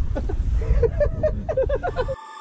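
Men's voices and laughter, faint and broken, over a low steady rumble.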